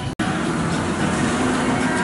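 Zamperla Disk'O ride running along its half-pipe track: a steady mechanical rumble with a low hum, after a brief dropout about a fifth of a second in.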